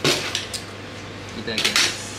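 Objects handled on a table: two short clattering noises about a second and a half apart, over a steady low hum.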